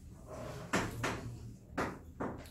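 Chalk tapping and scraping on a blackboard: three short, sharp strokes, the last near the end.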